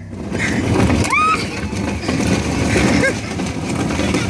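Hard plastic Tuggy toy tugboat being dragged on a tow strap over asphalt: a loud, continuous rough scraping rumble of the hull on the road, with a rising whoop about a second in.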